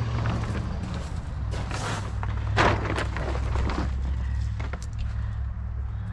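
Scattered rustling, scuffing and clicks from handling a black plastic tarp RV skirt and stepping on gravel, over a steady low hum.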